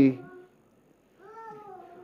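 The tail of a man's speech, then a faint, high-pitched drawn-out vocal call about a second long that rises a little and falls, somewhere in the room.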